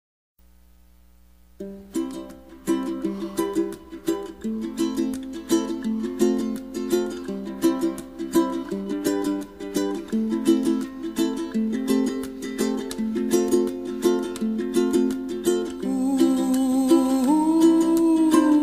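Music: a strummed ukulele playing a steady, gentle chord pattern, starting about a second and a half in after near silence. A man's voice enters near the end humming a long 'ooh'.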